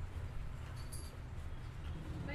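Steady low background rumble with one brief, faint high squeak about a second in.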